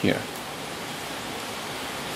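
A man's voice ending a word at the start, then a steady, even hiss with no distinct events.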